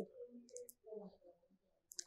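Near silence, with a few faint clicks in the first second.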